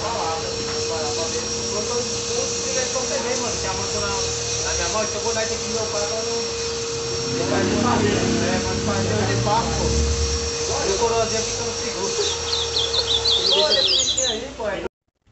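Steady hum of an electric hair clipper running, with voices in the background. The hum stops near the end, and a bird gives a quick run of high, repeated chirps.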